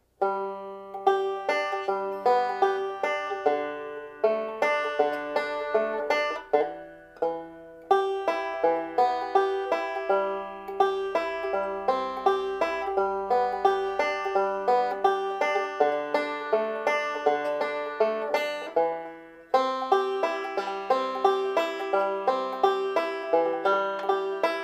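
Open-back five-string banjo being fingerpicked in a steady rolling backup pattern, one high note recurring throughout the run of plucked notes. The playing breaks off briefly about seven seconds in and again near twenty seconds.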